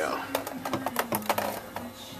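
Clear plastic baseball display cubes clicking and clacking against one another as one is set into place in a stack of others: a quick run of small sharp clicks.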